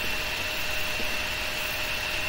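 Steady background hiss with a faint, constant high-pitched whine running through it. No distinct events.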